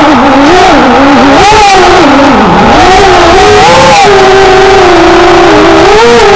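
A small engine revving up and down as it moves along a trail, its pitch rising and falling with the throttle, then holding a steadier pitch from about four seconds in.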